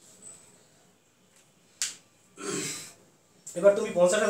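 A single sharp click about two seconds in, followed by a short breathy sound, then a man starts speaking near the end.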